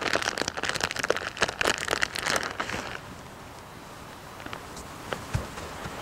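Plastic crinkling and crackling as a gloved hand presses and spreads shredded cheese over sausage meat on plastic wrap, busiest for about the first three seconds, then fading to a few faint ticks.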